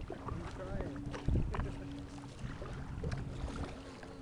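Kayak paddling: paddle blades dipping and water splashing and lapping against plastic kayak hulls, with scattered small knocks and a dull bump about a second and a half in.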